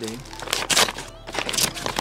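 Courier packaging being pulled open by hand: a plastic mailer bag and brown paper wrapping rustling and crinkling in a run of sharp, irregular crackles.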